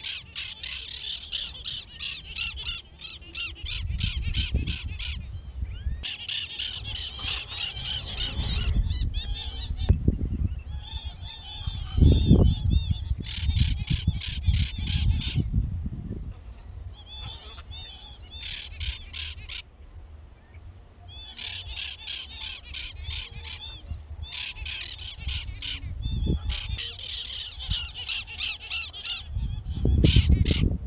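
Birds calling in repeated bouts of harsh, rapid chattering, each bout a few seconds long with short pauses between.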